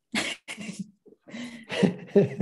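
A person coughing a few times in quick succession, heard over a video call.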